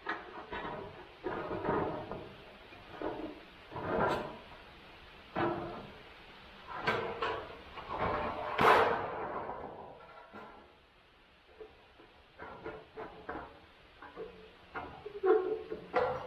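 Hand tin snips cutting thin 26-gauge galvanized sheet steel in a series of separate cuts, roughly one a second, with the sheet rattling. A louder clatter comes near the middle, then a short quiet spell before smaller cuts resume.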